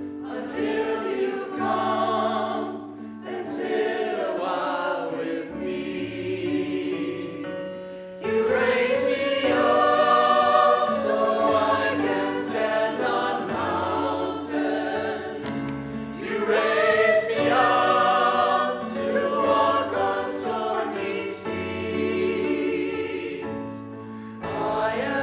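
Mixed choir of men and women singing together, the phrases swelling louder about a third of the way in and again past the middle.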